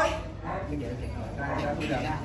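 Faint human voices with short, broken vocal sounds, much quieter than the chanted call just before.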